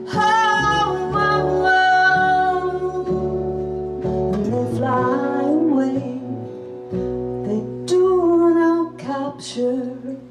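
A woman singing long held notes over strummed acoustic guitar and upright bass, in a live folk-jazz song.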